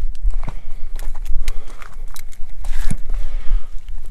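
Handling and movement noise: scattered clicks and light knocks over a low rumble as the tape measure is moved into place against the gel block.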